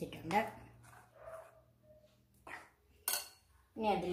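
Metal spoon stirring thick rice-and-jaggery batter in a glass bowl, then a small knock and one sharp clink of the spoon against the glass near the end.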